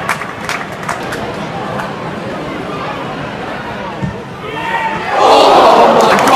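Football stadium crowd: a steady background of voices, then about five seconds in the crowd swells into a loud collective shout, many voices together sliding down in pitch.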